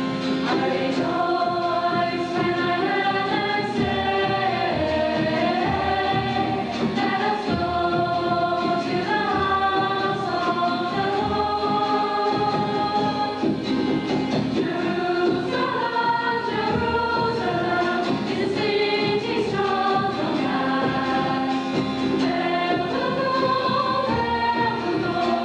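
Church choir of young voices, mostly girls, singing the responsorial psalm in long held phrases.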